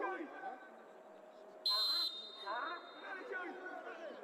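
Referee's whistle blown once, a short shrill blast of about half a second a little under two seconds in, signalling that the penalty kick may be taken. People's voices call out around it.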